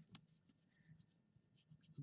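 Faint strokes of a coloured pencil shading on paper, barely above room tone.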